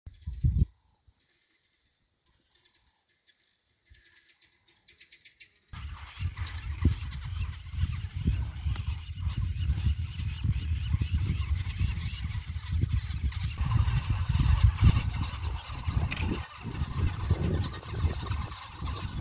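A short low thump at the very start, then faint, high-pitched chirping calls repeating for a few seconds. About six seconds in the sound switches suddenly to a loud, uneven low rumble with a rustling hiss above it.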